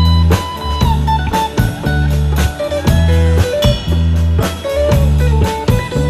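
Live band playing a blues-rock instrumental passage: an electric guitar plays a melodic line with bent notes over steady bass notes and a drum kit.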